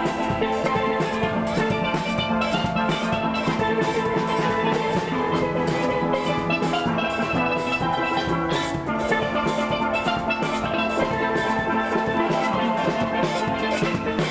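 A steel band playing a lively tune: many steelpans struck with rubber-tipped mallets in quick, ringing notes over drum accompaniment.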